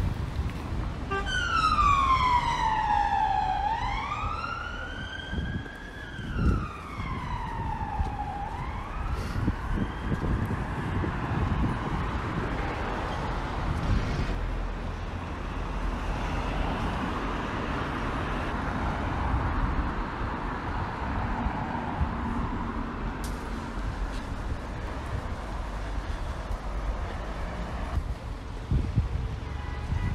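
Police car siren in a slow wail, its pitch falling and rising about every five seconds. It is loudest in the first few seconds and fades out after about ten seconds, leaving steady road traffic.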